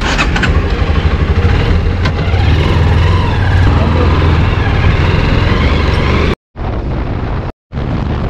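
Motorcycle running on the road, a steady low engine hum mixed with road noise. The sound cuts out completely twice, briefly, near the end.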